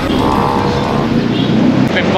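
Street traffic noise with a brief steady tone in the first second.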